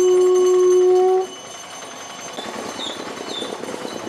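A blown horn holds one long, steady, loud note that cuts off abruptly about a second in. After it comes the quieter, even background noise of a street crowd.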